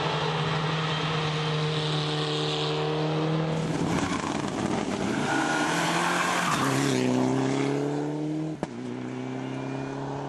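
Mitsubishi Lancer Evolution rally car's turbocharged four-cylinder engine running hard at high, steady revs, with a noisy rush of tyres sliding about four seconds in. The engine note drops in pitch about seven seconds in, and the sound breaks off abruptly near nine seconds before the engine note returns.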